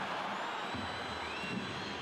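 Steady crowd noise from football stadium spectators during open play, with a little more low rumble from about a second in.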